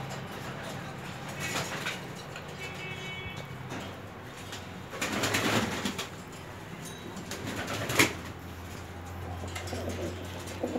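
Caged domestic pigeons cooing, with a noisy rustle about five seconds in and a sharp knock about eight seconds in, the loudest sound.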